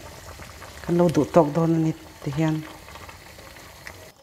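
Water at a rolling boil in a pot of pumpkin leaves, a steady bubbling hiss, with a fork stirring through the leaves. A voice speaks briefly about a second in and again shortly after, louder than the boiling.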